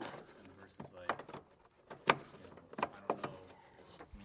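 Scattered light clicks and knocks, about eight of them, from gloved hands handling wiring, plastic connector and bracket parts at the car's radiator mount. The sharpest knock comes about two seconds in.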